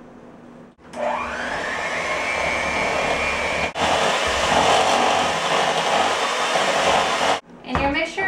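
An old handheld electric mixer is switched on about a second in; its motor whirs up to speed as the beaters whip pumpkin puree into a creamed butter, sugar and egg batter. It runs steadily, with a momentary break about halfway, and stops shortly before the end.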